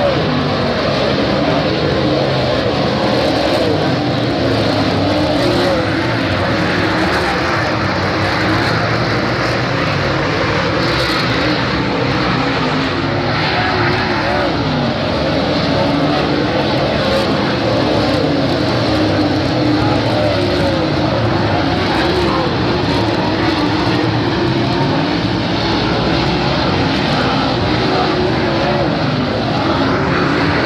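Several dirt late model race cars running at racing speed, their V8 engines loud and overlapping, the pitch wavering up and down as cars throttle and lift around the track.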